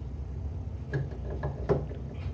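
A few light clicks and knocks in the second half, as a black ABS plastic pipe fitting is handled in the hands and lifted away.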